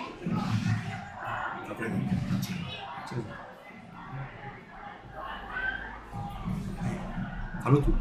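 Crowd of football supporters in the stands chanting and shouting, heard at a distance, with scattered nearby voices.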